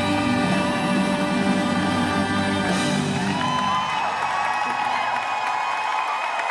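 Live band playing the closing bars of a ballad, with the full low end dropping away about halfway through as the last chord is held. Audience whoops and cheers come up over the ending.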